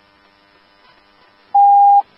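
Faint hiss, then about one and a half seconds in a single steady electronic beep tone sounds for half a second and cuts off abruptly.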